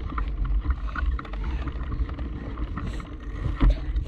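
Wind buffeting the microphone of a bicycle-mounted action camera as the bike rolls along a dirt path, with scattered clicks and rattles from the bike over the bumps and a louder knock near the end.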